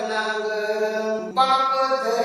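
A man's voice singing a Marathi poem in a chant-like style, holding long drawn-out notes and stepping to a new note partway through.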